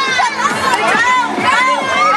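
A crowd of children shouting and cheering at once, many high voices overlapping with no pause.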